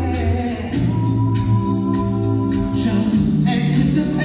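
Male a cappella group singing live: held vocal chords over a sung bass line, the bass moving to a new note about a second in and again near the end.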